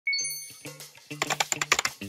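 A bright chime ding at the start, then a quick run of keyboard typing clicks from about a second in, over light background music: a typing sound effect for text being entered into an on-screen search bar.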